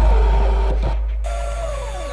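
Electronic drum and bass / breakcore music: a deep sub-bass hit that decays slowly, under synth tones that glide downward. About a second in the texture cuts out abruptly and a new falling synth tone comes in.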